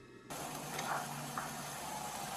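A moment of silence, then a sudden cut to a steady hiss of outdoor background noise on a police body camera's microphone, with a couple of faint ticks.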